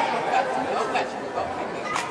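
Indistinct chatter of many voices echoing in a gymnasium, with a single sharp knock near the end.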